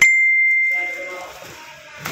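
A single bell strike: one clear, high ring that starts sharply and fades away over about a second and a half.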